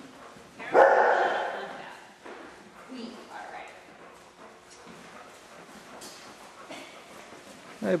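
Bearded collie barking during an agility run: one loud bark about a second in, then a few quieter barks.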